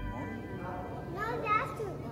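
Indistinct children's voices and chatter, with one child's voice rising and falling, loudest about one and a half seconds in.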